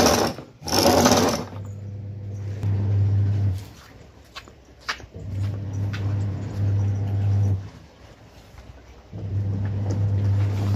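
A twin-tub washing machine's electric motor humming in bursts of about two seconds with pauses between, the stop-start pattern of its wash cycle. A few sharp clicks come about halfway through.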